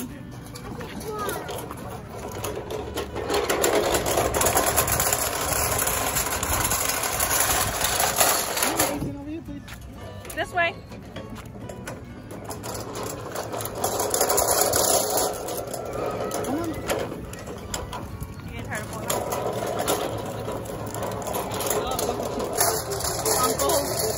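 A child's wagon rolling over brick pavers, its wheels rattling in stretches of several seconds with brief pauses between.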